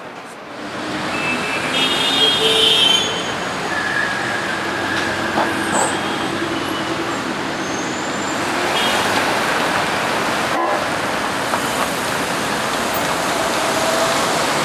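City street traffic: cars driving past on a busy road, with short car-horn toots about two to three seconds in.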